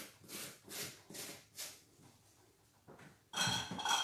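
Supplies being cleared off a table: four short scuffs as things are picked up and moved, then a louder clink of glass or dishware set down near the end.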